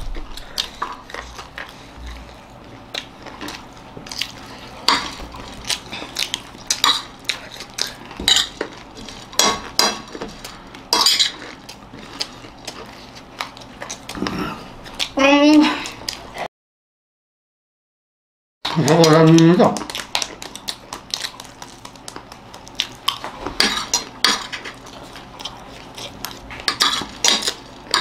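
Metal spoons clinking and scraping against plates in many short, irregular clicks as two people scoop up and eat their food. Brief voices break in around the middle, and the sound cuts out completely for about two seconds just after.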